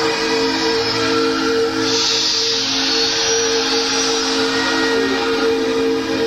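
Live concert music: a long, steady held chord, with a hissing swell in the treble about two seconds in that lasts over a second before fading back.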